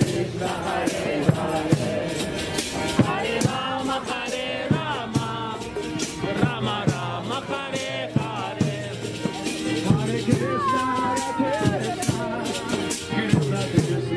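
Live street chanting (Harinama kirtan): voices singing over a steady beat of hand cymbals and drum strokes, with one long sung note sliding downward about ten seconds in.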